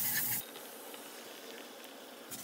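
Butter sizzling in a hot pan as a knife spreads it. The loud sizzle cuts off sharply about half a second in, leaving a faint, steady sizzle from the pan.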